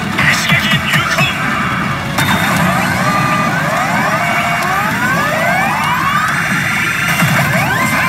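Hana no Keiji Lotus pachinko machine playing its bonus-round music and sound effects, with a run of overlapping rising tones sweeping upward from about two seconds in.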